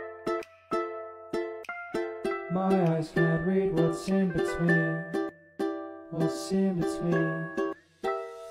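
Instrumental passage of a pop song: ukulele picking single notes and chords, with a low bass line coming in about two and a half seconds in.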